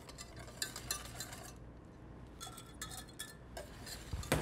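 Wire whisk stirring liquid in a stainless steel saucepan, with faint scattered clinks of metal on metal, a few ringing briefly in the second half.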